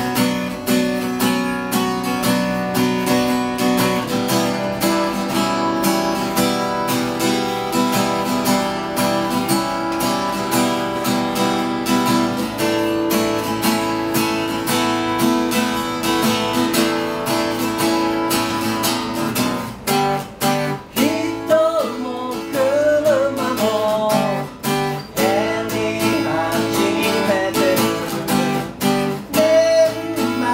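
Acoustic guitar being strummed and picked, with a man's voice singing along from about two-thirds of the way in.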